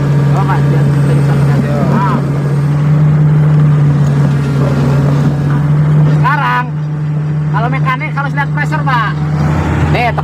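Komatsu PC400-8 excavator's six-cylinder diesel engine running steadily at high engine speed, heard from inside the cab, a constant low hum.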